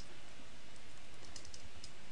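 A few faint keystrokes on a computer keyboard, in the second half, over a steady hiss.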